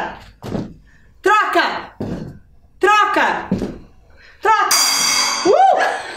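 A gong strikes about four and a half seconds in, a sudden bright shimmering ring that fades away: the signal to grab the cup. Before it, voices call out briefly twice.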